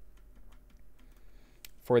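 A few faint, scattered clicks from a computer keyboard and mouse, with a man's voice starting near the end.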